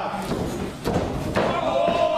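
Two thuds of wrestlers' bodies hitting the ring, the second, about a second and a half in, the louder, amid shouting voices.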